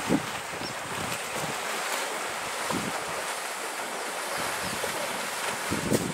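Water sloshing and splashing as elephants wade through a muddy waterhole, with a few low thuds from their steps.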